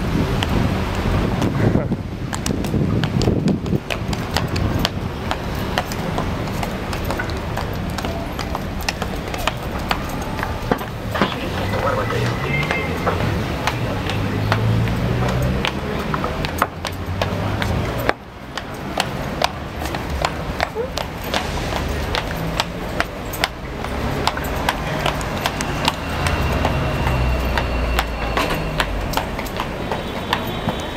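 Street noise: traffic and indistinct voices with many small clicks and knocks throughout. About eighteen seconds in the sound drops suddenly and then picks up again.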